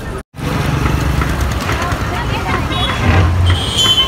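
Busy bus-station din: bus engines rumbling, with motorcycles and people's voices, broken by a short dropout just after the start. Just before the end, a high steady horn tone starts.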